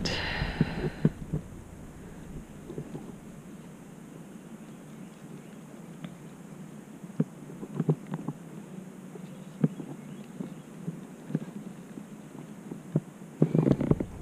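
Faint, scattered light knocks and clicks as a hooked bass is handled in a rubber-mesh landing net against a plastic kayak. There is a brief rush of noise right at the start.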